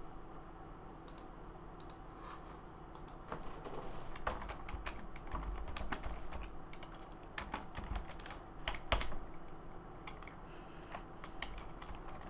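Typing on a computer keyboard: irregular runs of key clicks as a short chat message is typed and sent.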